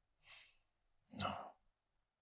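A person's short, faint breath out, like a sigh, followed about a second later by a quietly spoken "No."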